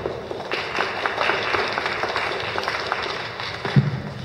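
Audience applauding, a dense run of clapping that fades out near the end. Just before it stops there is one sharp thump as the microphone on its stand is handled.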